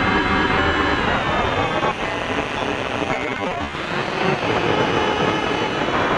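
Dense electronic music: layers of steady synthesizer tones over a thick wash of noise, holding at an even level throughout.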